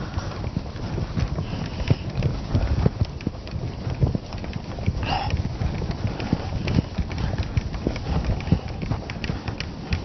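Whiteboard being wiped clean with a duster: irregular rubbing and knocking of the eraser against the board, with a brief higher rub about five seconds in.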